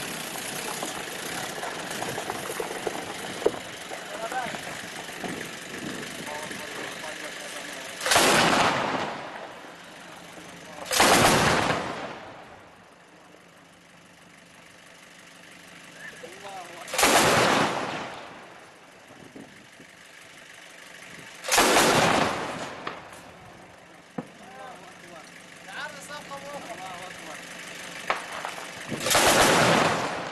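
Five short bursts of fire from a heavy machine gun mounted on a pickup truck's bed, spaced a few seconds apart. Each burst is loud and brief and rings on for a moment. Before the first burst the truck's engine is heard running steadily, and men's voices come between the later bursts.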